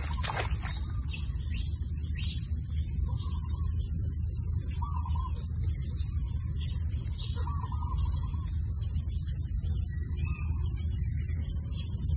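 Hands splashing into shallow, muddy rice-paddy water right at the start. After that comes a steady low rumble and a continuous high-pitched drone, with a few faint short sounds scattered through.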